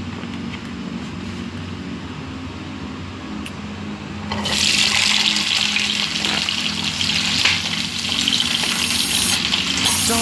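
Chopped bell peppers hitting hot oil in a nonstick wok: after a few quiet seconds, a loud hissing sizzle starts suddenly about four seconds in and keeps going as they fry.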